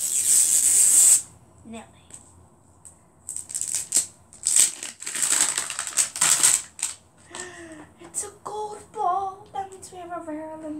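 Wrapping being torn off an LOL Surprise ball in several separate rips, the longest near the start and around the middle. A girl's voice is heard without clear words near the end.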